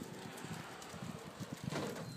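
Faint wind on the microphone with the low rattle of a BMX bike rolling over asphalt, and a brief louder scuff near the end.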